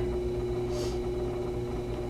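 Potter's wheel running with a steady hum while a clay pot spins on it, with one short soft hiss nearly a second in.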